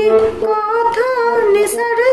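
Harmonium playing a slow melody of held notes, with a woman's voice singing along; the sung line glides and wavers in pitch around the middle.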